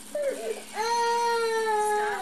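A person's voice letting out a long, high crying wail on one slightly falling note, after a short vocal sound just before it.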